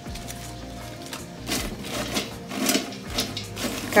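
Cherry twigs and leaves rustling and crackling in short bursts as hands spread them in an enamel pot, with faint music underneath.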